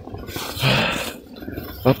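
A man's heavy breath out, about half a second in and lasting under a second, from the effort of climbing a snowy hill: he is out of breath.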